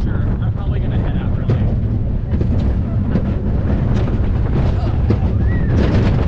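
Steel roller coaster train running along its track, its wheels clattering and rattling over the rails, with wind buffeting the on-ride microphone in a heavy low rumble. A brief rising-then-falling squeal sounds about five and a half seconds in.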